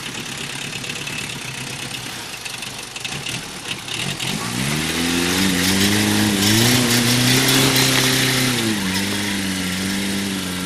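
Old flatbed truck's engine working hard as the truck climbs out of a river up a steep bank, over a noisy rush at first. About four and a half seconds in the engine note rises steeply, holds high, then dips slightly near the end.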